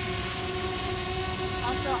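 DJI Spark quadcopter hovering close by, its propellers giving a steady, even-pitched whine over a low rumble.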